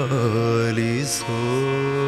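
A male voice singing long, held notes with slow wavering and gliding pitch in Carnatic devotional style, over a steady drone.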